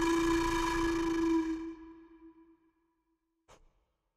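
A wind instrument holding one long steady note, the end of a slow melody, which fades away about two seconds in. A brief faint click comes near the end.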